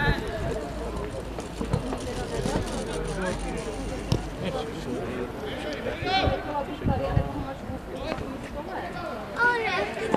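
Voices shouting across a football pitch during open play, loudest about six seconds in and again near the end. Wind rumbles on the microphone for the first few seconds.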